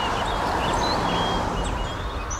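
A 4WD towing a caravan driving past, its tyre and road noise swelling and then easing off, with small birds chirping.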